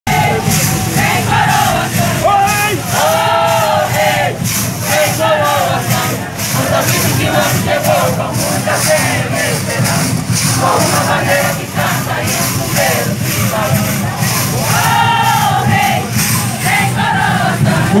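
Moçambique congado group singing a chant together in phrases over a steady, continuous percussion beat, with the voices of a crowd around them.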